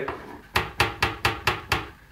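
A run of about six quick, even knocks, roughly four a second, from a kitchen utensil striking a bowl or board while chopped garlic is worked into grated sweet potato and plantain.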